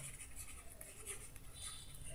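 Faint sound of a stylus writing a word on a digital pen tablet.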